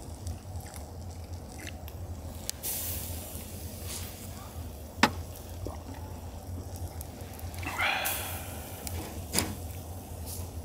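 Clams roasting on a wire grill over charcoal, their juices sizzling and bubbling in the shells with a soft hiss. A sharp click sounds about halfway through and another near the end.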